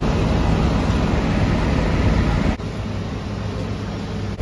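City street noise: a steady rush of traffic. It drops to a lower level at a cut about two and a half seconds in.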